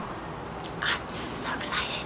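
A woman's soft, breathy, whisper-like sounds with no voiced speech: a few short hisses of breath, the strongest a little after a second in, over a faint steady background hiss.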